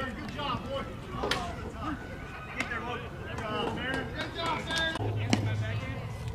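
Voices talking indistinctly, with two sharp knocks, one about a second in and one near the end.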